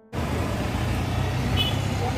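Urban street traffic: a small goods truck and motor scooters passing close by, a steady low engine rumble over road noise. It starts abruptly just after the start.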